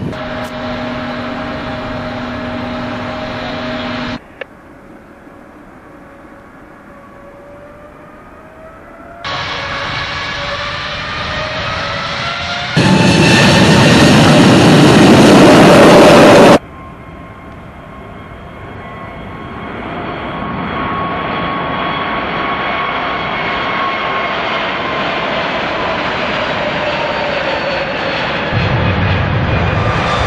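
Turbofan jet engines of the Irkut MC-21-300 airliner, a whine of several tones over a rushing roar, cut between shots. The loudest burst comes about a third of the way in. From about halfway the sound builds steadily as the engines spool up for the takeoff roll.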